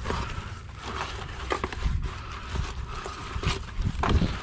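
Ice-covered nylon ratchet-strap webbing being fed by hand into a plastic bucket of salt water: irregular scraping, rustling and knocking handling sounds over a steady low rumble.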